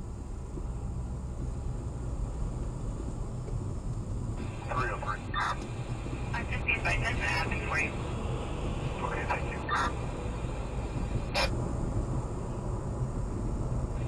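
Police dispatch radio chatter, clipped voice transmissions with clicks and dropouts, starting about four seconds in, over a steady low road and engine rumble inside a car as it accelerates from a standstill.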